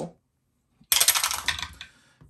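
A handful of dice clattering down through a clear acrylic dice tower into its tray, a quick burst of sharp rattling clicks starting about a second in and lasting about a second.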